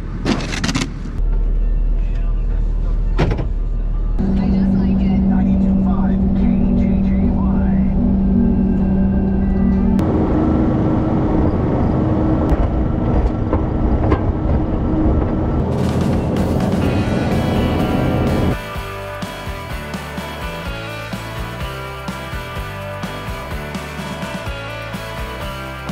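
A snow shovel scraping and knocking for the first few seconds, then a Kubota skid steer's diesel engine running steadily under load as it pushes snow, its low drone stepping up in pitch about ten seconds in. Background music takes over for the last few seconds.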